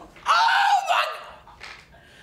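A woman's loud, high-pitched wordless cry lasting just under a second, then trailing off.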